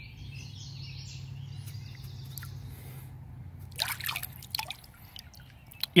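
A hand washing in chlorinated pool water: soft swishing, then a few splashes and drips about four seconds in, over a low steady hum that fades about halfway through.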